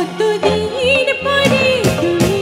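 A woman singing live into a microphone, backed by a band with drums, keyboards and electric guitars. Her sung line slides between held notes that waver with vibrato.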